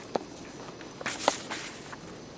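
Handling noise close to the microphone: a sharp knock just after the start, then a short cluster of clicks and rustling about a second in, over a faint steady hiss.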